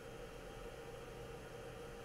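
Faint, steady hiss with a low, even hum underneath, with no distinct events.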